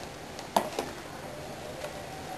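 Plastic toiletry bottles and tubes knocking lightly against each other as they are pushed into a wicker basket: two short clicks just over half a second in, over low room hiss.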